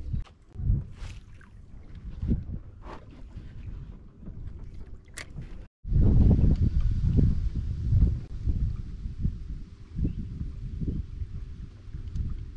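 Gusty wind on the microphone and water lapping at a small boat trawling under an electric trolling motor, with the motor's faint steady hum coming through in the second half. The sound cuts out briefly about halfway through.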